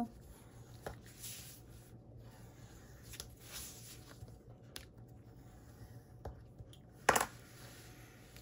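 Faint swishes of a bone folder rubbing over paper and chipboard, pressing the taped edges down, with one sharp tap about seven seconds in.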